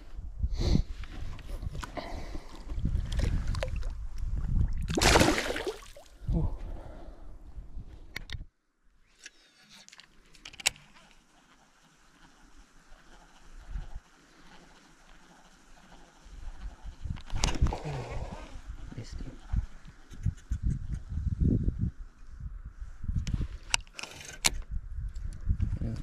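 Water splashing and hand-handling noise as a small Murray cod is held over shallow river water and let go, with the loudest splash about five seconds in. After a sudden cut there is a quiet stretch, then irregular water movement and rustling as the angler wades and fishes again.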